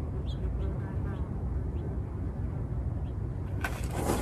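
Outdoor background of a steady low rumble of distant traffic, with a few faint high chirps. Near the end comes a short burst of rustling and clatter as someone gets up from the table.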